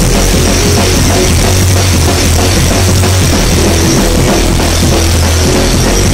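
Rock band playing loud and steady: drum kit with cymbals, electric bass and electric guitar together.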